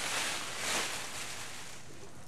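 Foam packing peanuts pouring out of a plastic bag and settling: a soft rustle that swells briefly about half a second in, then fades.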